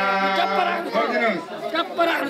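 A man's held chanted note ends about half a second in, then several people talk over one another.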